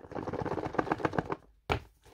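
Fingers picking and scratching at a sealed smartphone box, a fast, dense run of small clicks that stops about a second and a half in.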